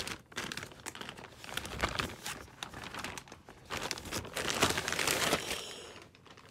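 Clear plastic bag crinkling and rustling continuously as a bike rack is pulled out of it, the crackling heaviest near the end.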